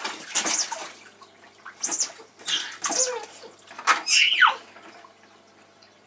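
Water splashing in a small inflatable paddling pool as a baby slaps at it, in several short irregular splashes, with a short falling squeal about four seconds in.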